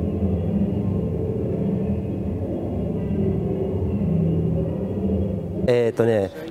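Sine-wave sound installation sounding a dense drone of many sustained low tones, stacked together and shifting slightly in pitch. It cuts off suddenly near the end.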